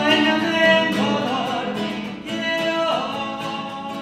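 Two nylon-string classical guitars strummed together while a man sings over them, with a held note that wavers a little after a second in.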